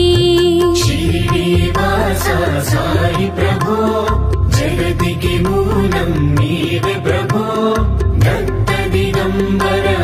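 Instrumental interlude of Indian devotional music: a melody over a steady drone, with a regular percussion beat.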